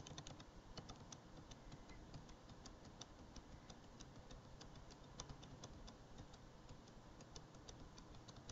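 Faint computer keyboard keys tapped repeatedly in quick, irregular succession, a few clicks a second.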